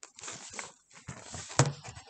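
Handling noise from a picture book being lowered and its pages turned: uneven rustling and scraping, with one sharp knock about one and a half seconds in.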